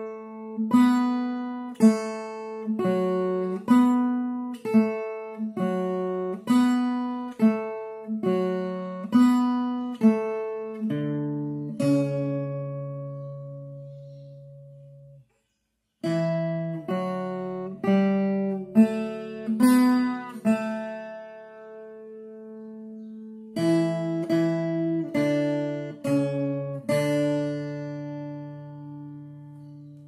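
Viola caipira, the Brazilian ten-string guitar, picking a slow single-note melody in D major. It comes in two phrases, each ending on a long ringing note, with a short silence about halfway.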